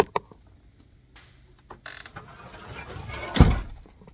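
A door being opened and let shut, with rustling that rises towards one loud thump near the end.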